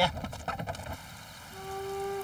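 Shuffling footsteps and rustling of a group of men walking, then a soft flute note begins and holds in the second half as background music starts.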